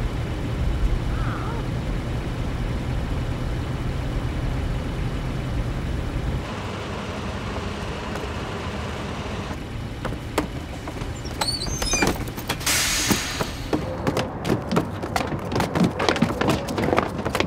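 Coach bus engine running with a steady low rumble that drops away about six seconds in. Near the end comes a short hiss of air, then a quick run of knocks and footsteps as people step down out of the bus.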